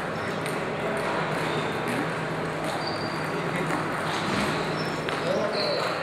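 Table tennis ball clicking off paddles and the table in scattered, uneven knocks, over background voices in a large hall.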